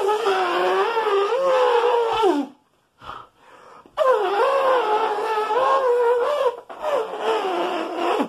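A man imitating an elephant's trumpet with his voice: long, high, wavering calls, three of them, with a short break about two and a half seconds in.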